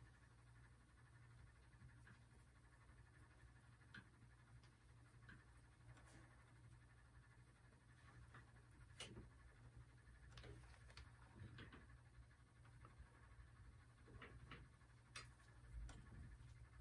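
Near silence: a steady low room hum with a few faint, scattered ticks.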